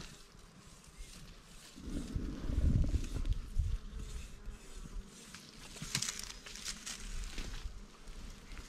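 Wild African honeybees buzzing around their nest hole in an earth bank, stirred up as the nest is opened. There is scraping and rustling in the hole, with a louder low rumble about two to three and a half seconds in and a few sharp scratches around six to seven seconds.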